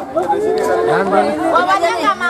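A group of people talking and calling out over each other: lively group chatter.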